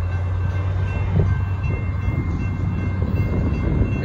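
Amtrak Texas Eagle passenger train approaching a grade crossing: a steady low rumble. Over it the crossing signal's bell rings as a few thin, steady high tones.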